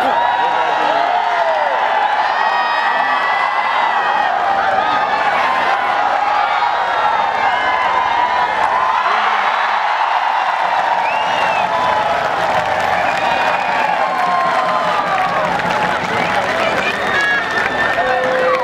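Large crowd of spectators shouting and cheering, many voices overlapping at a steady level.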